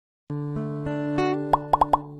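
Channel intro jingle: music starts a moment in with sustained pitched notes, then three quick, loud upward-sliding cartoon pops near the end.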